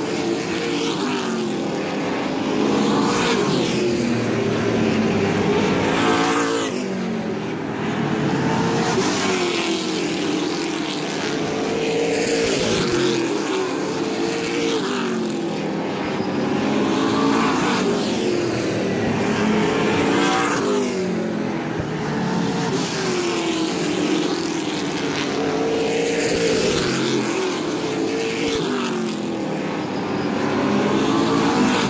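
Several stock-car engines racing in a pack around a short oval track. Their pitch rises and falls about every three seconds as the cars come off the corners and back into them.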